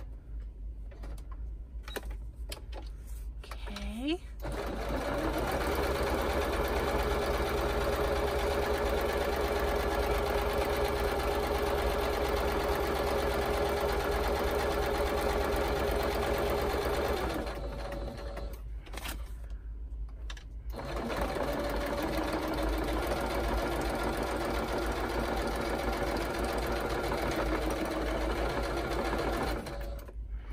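Singer Patchwork electric sewing machine stitching through layered paper. About four seconds in the motor winds up and runs steadily for some thirteen seconds, stops for a few seconds, then starts again and runs on steadily.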